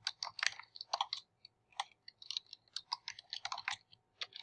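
Computer keyboard keystrokes: quick, irregular runs of key clicks as a line of code is typed, with a short pause about one and a half seconds in.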